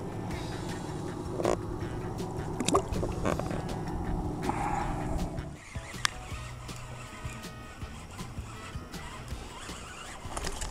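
Background music with steady sustained tones, thinning out just over halfway through, with a few sharp clicks or knocks over it.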